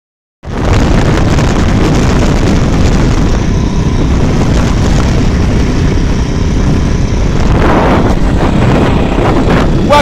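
Motorized bicycle's small engine running at road speed, heard through heavy wind rush on the microphone. It sets in suddenly about half a second in and stays loud and steady throughout.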